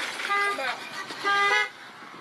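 A car horn honking twice, short blasts of about half a second each, about a second apart.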